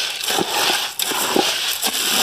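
Steady, loud hiss with crackling, as of corn kernels roasting in a hot pan, with short falling chirps over it several times a second.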